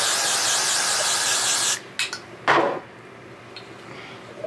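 An aerosol hairspray can gives one long, steady hiss lasting about two seconds, sprayed close to the hair, then stops abruptly. A couple of short knocks or handling sounds follow about half a second apart.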